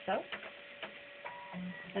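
A few light clicks as a phosphor imaging plate is pushed into the loading slot of a ScanX dental scanner, with two brief faint tones in the second half.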